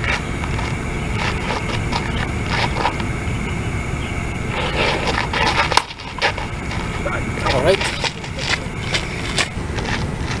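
A baseball bat hits a pitched ball once with a sharp crack just before six seconds in, over a steady low rumble and scattered light scuffs on the dirt infield.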